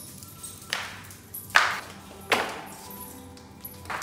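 Footsteps going down tiled stairs in flip-flops: four sharp slaps about a second apart, the second the loudest. Faint music plays underneath.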